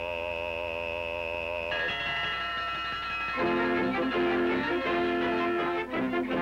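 A long note held with a wavering vibrato, sung by a cartoon character, gives way about two seconds in to an orchestral score. The score grows louder and fuller a little past halfway.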